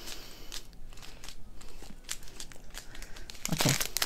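Small plastic bags of diamond-painting drills crinkling and rustling in irregular little crackles as they are slid across a tabletop.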